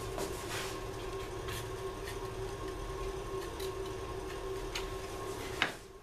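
Steady workshop hum with a few faint, scattered clicks as the thin bent wooden veneer strip is handled and checked; the hum dips just before the end.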